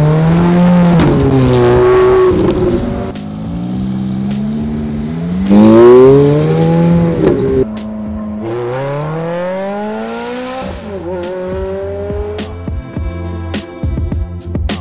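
Ferrari F430's 4.3-litre V8 accelerating hard through the gears. The engine note climbs three times, dropping at each upshift, and is loudest on the second climb. Music with a beat comes in near the end.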